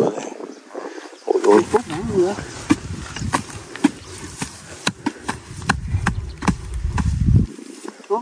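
A short-handled metal digging tool chopping into hard clay soil to dig out a rat burrow: repeated sharp strikes, several a second and irregular, with clods cracking and breaking away.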